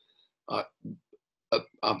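Two brief low vocal noises from a man, a throat sound and a short grunt-like sound about a third of a second apart, before he speaks again.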